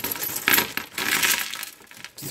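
A bagful of removed electrolytic capacitors poured out of a plastic bag, clattering and tumbling onto a tabletop, loudest about half a second in and dying away near the end.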